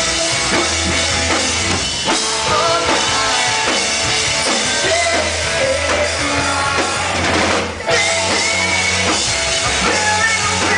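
A rock band playing live: drum kit driving the beat under electric guitars, with one short break about three-quarters of the way through before the full band comes back in.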